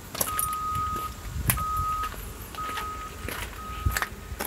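A vehicle's back-up alarm beeping while it reverses: a steady, single-pitched beep about half a second long, repeating about once a second, four times, over a low engine rumble. A sharp knock comes about a second and a half in.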